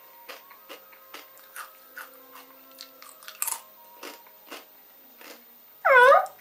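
A person chewing sweet potato crisps: a string of short, sharp crunches, two or three a second and uneven, with one louder crunch about halfway. A brief voiced sound from the eater comes right at the end.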